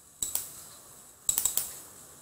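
Sharp clicks of a computer keyboard and mouse: two about a quarter second in, then a quick run of about five a little after one second.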